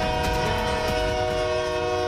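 Locomotive air horn sounding one long, steady blast, a chord of several notes held together over a low rumble.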